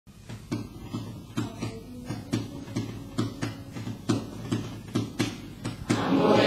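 Percussive beats in a steady rhythm, about two or three strikes a second, opening a piece of music.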